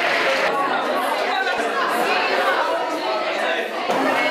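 Applause ending abruptly about half a second in, then a group of people chattering at once in a large room, many overlapping voices with no single speaker standing out.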